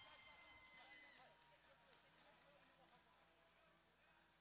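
Near silence: faint room tone, with a faint high steady tone that fades out about a second in.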